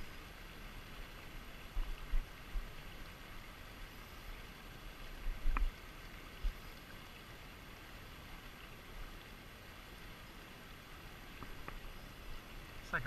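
Steady rush of flowing river water, with a few low thumps and one short sharp click about five and a half seconds in.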